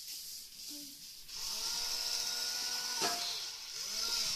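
Small electric motor of a corded-remote toy CAT forklift running as the toy drives, a steady whine that starts about a second in and rises and falls in pitch at its start and end, with a sharp click near three seconds.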